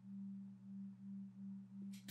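A faint, steady low hum that swells and fades a little over twice a second.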